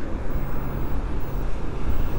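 Wind rushing over the microphone and road noise from an electric scooter riding at about 30 km/h, with a faint steady low hum underneath.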